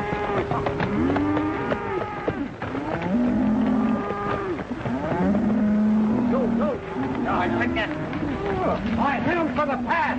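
A herd of cattle mooing: many long, overlapping calls, some held steady for about a second. Galloping horses run beneath them.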